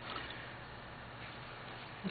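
Faint, steady hiss of room tone, with no distinct event standing out.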